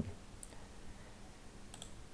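Faint computer mouse clicks over low room hiss: one click about half a second in and a quick pair near the end.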